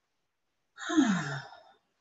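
A woman's audible sigh starting a little before the middle: one breathy exhale about a second long, its voiced tone falling in pitch as it trails off.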